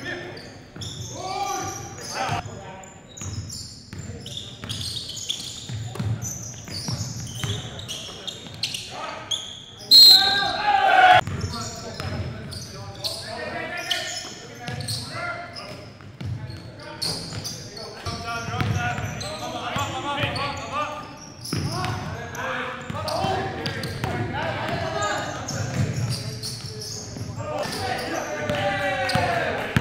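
Live basketball game sound: a ball bouncing on a hardwood gym floor amid indistinct players' voices, echoing in a large gym. There are frequent short knocks and a louder burst with a brief high tone about ten seconds in.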